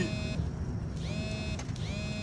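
Low rumble of a car engine heard inside the cabin, with a high electronic tone that comes and goes a few times.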